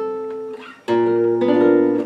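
Flamenco guitar sounding two chords, the second and fuller one strummed about a second in, each left ringing: a D-sharp seventh voicing from the minera's chords.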